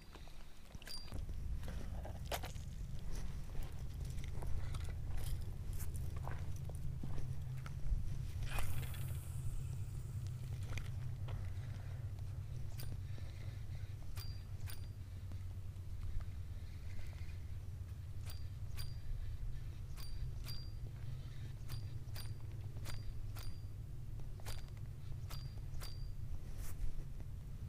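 Spinning reel being cranked through a lure retrieve: a steady low hum with scattered sharp clicks, with braided line fouling the reel's line roller bearing. A short hiss about eight and a half seconds in.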